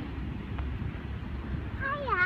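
Low wind rumble on the microphone of a camera riding a moving playground swing, with a short high-pitched squeal that dips and rises near the end.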